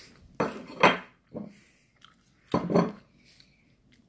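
Dishes and cutlery clattering in a few short bursts as things on a table are handled: twice in the first second, once briefly around a second and a half, and once more just past the middle.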